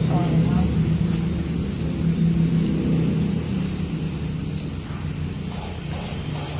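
Brief talking at the start over a steady low rumble, which slowly fades over the next few seconds.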